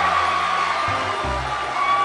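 Large audience laughing and cheering in response to a joke, over a background music track with a steady low bass.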